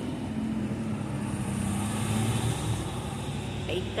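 A motor vehicle's engine running on the street, a steady low hum that holds for about two seconds and then fades a little.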